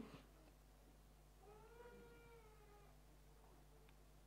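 Near silence, with one faint, high-pitched, voice-like cry of about two seconds in the middle that rises slightly and then falls.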